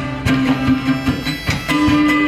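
Live acoustic band playing an instrumental passage: a fiddle holding long bowed notes over strummed acoustic guitar, with a drum kit keeping the beat.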